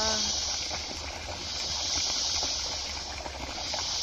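Steady high hiss of outdoor background noise, with the drawn-out end of a spoken 'yeah' in the first moment.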